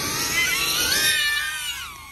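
FPV quadcopter's brushless motors whining as it punches to full throttle on takeoff, several pitches climbing together. Near the end the whine drops in pitch and fades as the drone flies away.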